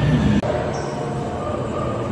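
Dark-ride car running along its track: a steady rumbling drone with held squealing tones. There is a sharp click and a brief dropout about half a second in.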